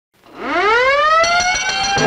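A siren winds up from silence, its pitch rising smoothly and levelling off into a steady wail. Near the end a brass band fanfare comes in over it.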